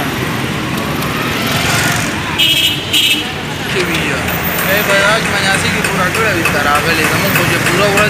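Busy street traffic: passing vehicles with engines running and background voices.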